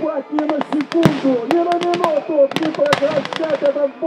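Battle-reenactment gunfire: blank rifle and machine-gun shots and pyrotechnic blasts, sharp irregular cracks coming several times a second. A voice calls out over the shooting.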